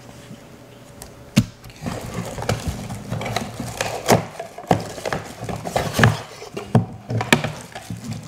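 Cardboard packaging and a plastic bag being handled by hand. There is a sharp knock about a second and a half in, then a busy run of clicks, scrapes and crinkling as a boxed temperature controller is taken out.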